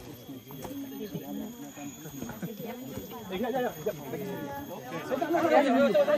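Several people chatting at once in the background, the voices getting louder and busier near the end, over a faint steady high-pitched tone.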